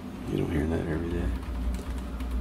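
A man's voice making a short wordless murmur, like a hum, lasting about a second, over a low steady hum.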